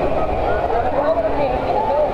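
Background voices of many bathers in a busy swimming pool, over a low steady rumble.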